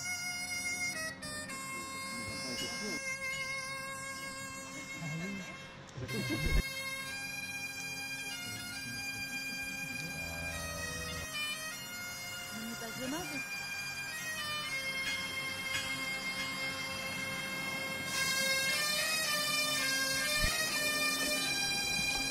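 Bagpipe music: steady drones under a changing melody. There is a brief low thump about six seconds in.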